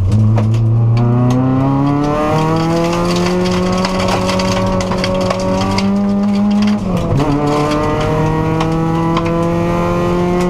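Subaru WRX rally car's turbocharged flat-four engine heard from inside the cabin under hard acceleration, its pitch climbing slowly through a gear, dropping at a quick upshift about seven seconds in, then climbing again. Loose gravel ticks against the underside of the car throughout.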